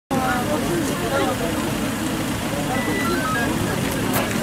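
Several people talking over one another, over a steady low rumble of vehicle engines running. A few short high beeps sound in the second half.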